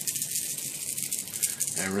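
Aerosol can of Alclad primer and microfiller being shaken, its mixing ball rattling rapidly and evenly inside the can. The rattle stops near the end.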